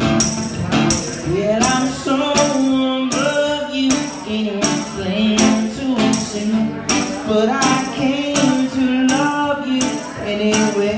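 Live amplified acoustic guitar playing a rock song, over a steady percussive beat of about three hits every two seconds. A man's voice sings over parts of it.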